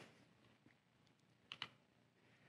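Near silence, broken by two faint quick clicks about one and a half seconds in, from the button of a handheld presentation remote advancing the slide.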